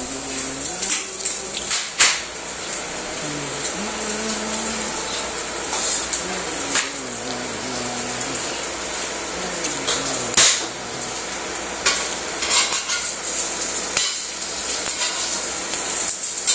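Eggs frying in a skillet with a steady sizzle, broken by a few sharp clinks and knocks of a metal spatula and a plate against the pan and countertop.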